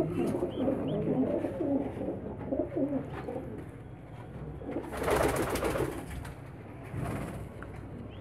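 Pigeons cooing softly, with a brief rustling noise about five seconds in.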